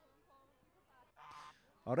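A white domestic goose gives one short honk a little past the middle, faint against the quiet around it.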